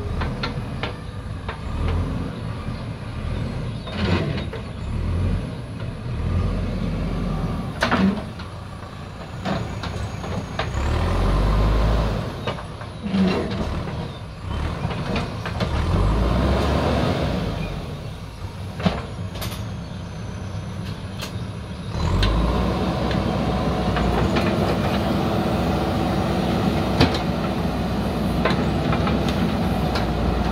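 Diesel engine of a JCB 3DX backhoe loader running under hydraulic load as its backhoe digs a trench, with scattered knocks and clatter from the bucket working the soil. The engine gets louder and steadier about two-thirds of the way through.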